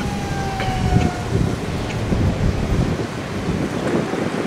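Wind buffeting the microphone outdoors, a rough low rumble throughout. A thin tone slides slowly downward over the first second and a half.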